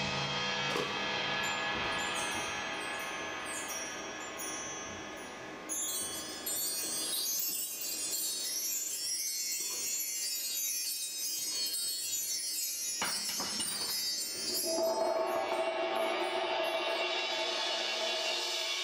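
Bar chimes (a mark tree) on a drum kit swept again and again, a long shimmering run of high tinkling notes, over the fading ring of cymbals. A lower sustained ringing tone joins near the end.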